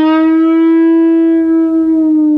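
A single sustained electric guitar note, the third string fretted at the 7th fret, being bent: its pitch rises gently and then eases back down while the note rings on.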